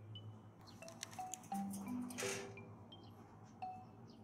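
Background music of light, bell-like chime and mallet notes, played in short held notes at varying pitches, with a brief rushing noise about halfway through.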